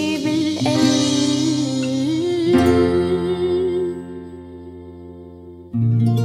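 A woman singing a slow ballad over instrumental accompaniment, holding long notes. The music drops in level about four seconds in and comes back with a fuller chord just before the end.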